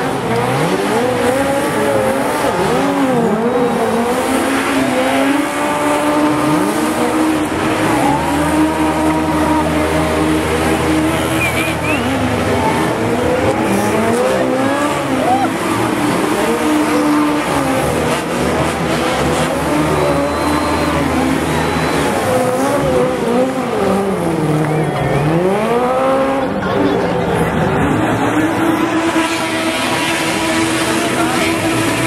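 Several Legends race cars (small 1930s-style replica coupes) doing donuts, their engines revving up and down over and over with tyres squealing and skidding on the tarmac. One engine's pitch drops low and sweeps back up sharply near the end.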